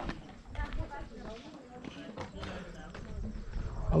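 A faint voice, talking or singing, over a low rumble.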